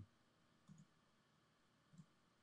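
Near silence, broken by two faint clicks, one under a second in and one near the end: a computer mouse being clicked.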